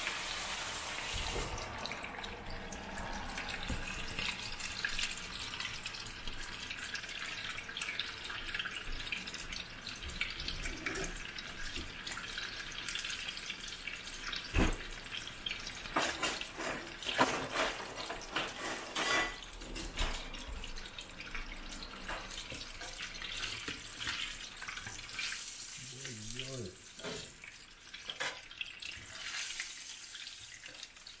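Battered chicken pieces deep-frying in a pot of hot sunflower oil: a steady bubbling hiss with scattered pops and crackles, several sharper ones around the middle.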